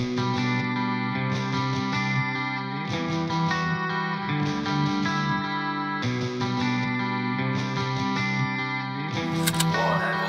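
A melodic guitar loop from an alt trap / rock type beat, playing without drums or bass. The phrase repeats about every six seconds, and a few percussive ticks come in near the end.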